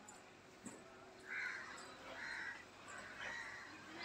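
A bird calling three times in harsh, rasping calls about a second apart, the first the loudest.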